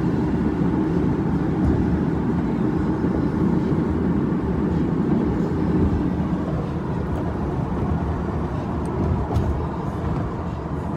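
Steady road and engine noise inside a car's cabin while it is driven at speed, a low even rumble with tyre hiss. A couple of faint clicks come near the end.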